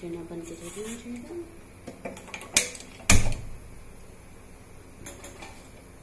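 Gas stove burner being lit under an aluminium pressure cooker: a few sharp clicks about two seconds in, ending in a louder click with a soft thud as the flame catches.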